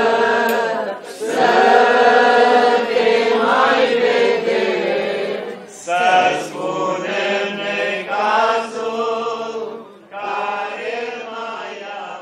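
Eastern Orthodox liturgical chant sung by several voices: slow, sustained phrases broken by short pauses about a second in, near six seconds and near ten seconds, fading toward the end.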